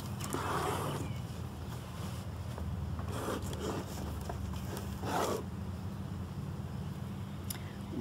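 Lid of a foil-wrapped cardboard gift box sliding off, then the paper inside rustling open in a few brief swishes, over a steady low hum.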